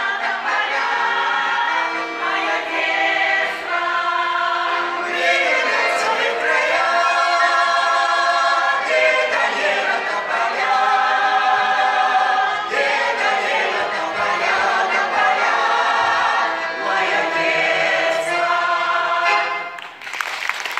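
Mixed Russian folk choir of women's and men's voices singing a song in harmony, in long sustained phrases. The song ends near the end.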